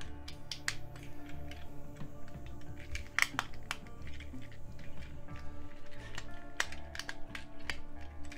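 Sharp plastic clicks and small rattles from a Transformers Silverstreak figure as its parts are pressed and snapped into car mode, the loudest click a little after three seconds in. A quiet background music bed with a steady low beat plays throughout.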